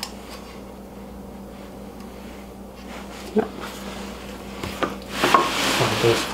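Hand-handling of a biscuit joiner: a light click as its fence height adjustment is tightened down, a single knock about halfway, then a scraping, rubbing noise of the tool against a wooden board building near the end.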